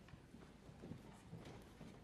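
Near silence: concert-hall room tone, a low rumble with a few faint scattered knocks and rustles.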